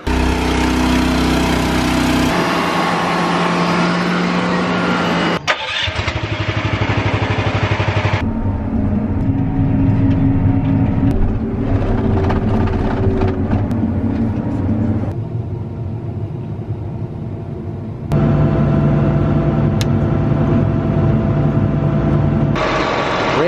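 Diesel engines of farm machinery running steadily, the sound changing abruptly several times as one machine gives way to another. A sharp click comes about five and a half seconds in.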